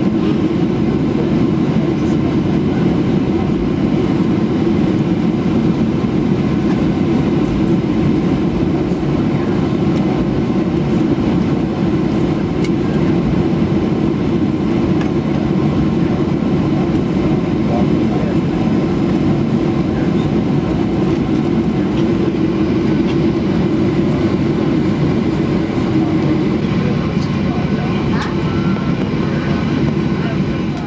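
Boeing 737-800 cabin noise during taxi: the CFM56 engines at idle, heard from inside the cabin together with the air-conditioning rush, a steady low drone.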